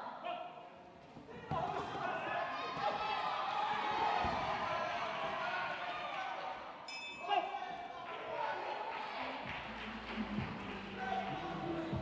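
Voices shouting from ringside through the closing seconds of a boxing round, with a short, bright ring of the boxing bell about seven seconds in that ends the round. A low hum comes in near the end.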